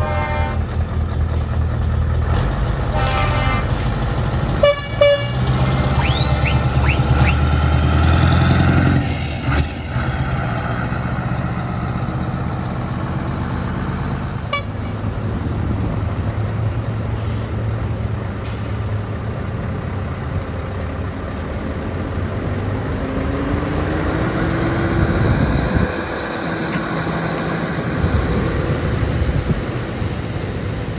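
Scania trucks' diesel engines running as they drive slowly past, loudest in the first nine seconds, with two short horn toots about three and five seconds in. An engine note rises and falls again about three-quarters of the way through.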